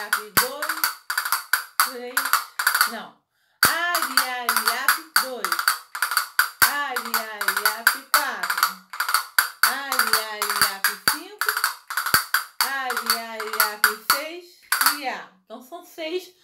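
Castanets clicking in quick rolls and strikes while a woman sings a wordless flamenco-style 'ai, ai' line over them. The playing follows a fandango de Huelva pattern. Both stop briefly about three seconds in, then carry on.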